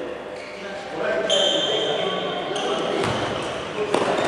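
Sounds of a basketball game in a hall: voices of players and spectators, and a basketball bouncing. A steady shrill whistle blast starts just over a second in and is held for more than a second before it fades.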